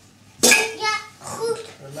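A young child's voice in short, loud bursts, the first starting sharply about half a second in.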